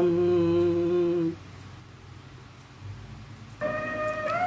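A man's singing voice holding the last note of a Tamil film-song line steady for just over a second, then a pause. Near the end, instrumental backing music comes in with a sustained note.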